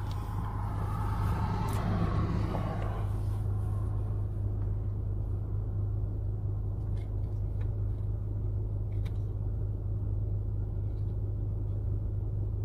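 Steady low hum of an idling car engine heard from inside the cabin, with a rushing noise that fades away over the first three seconds and a few faint ticks later on.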